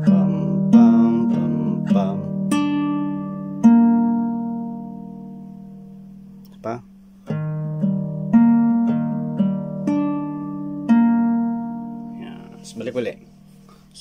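Capoed nylon-string classical guitar fingerpicked slowly, one string at a time, over the same chord shape, a C major 7: a bass note, then the higher strings in turn. The pattern is played twice, each pass left to ring and fade away.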